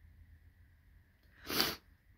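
A woman sniffling once while crying, a short sharp breath in through the nose about a second and a half in.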